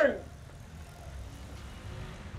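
The end of a shouted military command trails off with falling pitch, followed by a steady low outdoor rumble like distant traffic.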